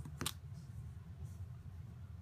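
A single sharp tap of hard plastic stamping tools (ink pad and clear acrylic stamp block) handled on a craft mat about a quarter second in, over a steady low room hum.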